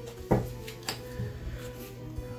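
Soft background music with steady held tones, with a couple of short clicks from a deck of tarot cards being handled and spread out across a table.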